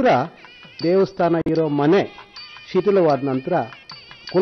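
A man speaking in short phrases, with faint music underneath in the pauses.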